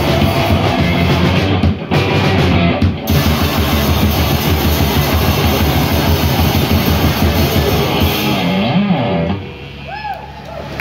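Live hardcore band playing loud: two distorted electric guitars over a drum kit. The song drops away about nine seconds in.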